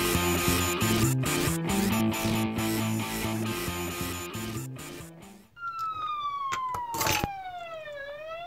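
Background rock music fades out about five and a half seconds in. A police-style siren wail then starts, one clean tone gliding slowly downward, with a short knock just before the end.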